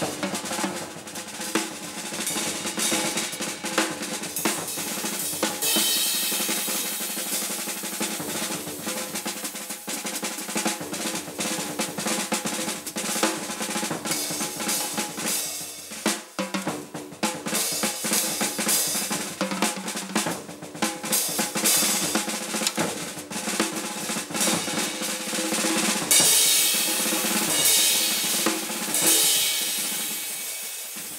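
Jazz drum kit played solo: fast snare-drum strokes and rolls with rimshots, bass drum and cymbals. The cymbals come up loudest a few seconds before the end.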